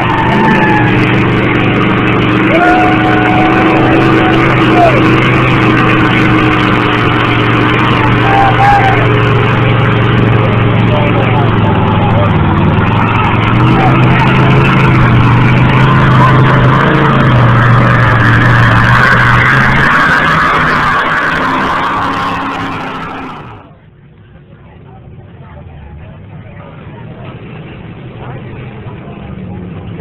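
A mud-bog truck's engine running loud and steady under load with a dense wash of noise, mixed with crowd voices. About three-quarters of the way through the sound drops away sharply to a much quieter background that slowly builds again.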